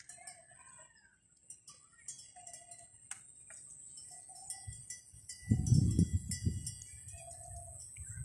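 Evening outdoor ambience: a steady high-pitched insect drone, with short repeated bird calls every second or so. About five and a half seconds in, a loud low rumble on the microphone lasts about a second.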